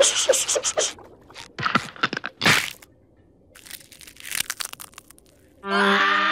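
A short laugh, then clusters of sharp cartoon cracking and crunching sound effects with a brief silent gap in the middle. Music comes in just before the end.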